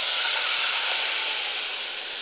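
Cold milk poured into a hot pan of oil-and-flour roux, sizzling with a loud steady hiss that slowly dies down.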